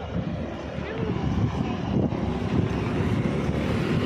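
Low rumble of street traffic, growing louder over the first couple of seconds, mixed with wind buffeting the phone's microphone.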